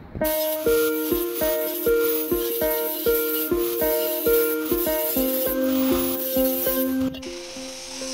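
Background music: a melody over a steady beat. The beat drops out about seven seconds in, leaving a held note.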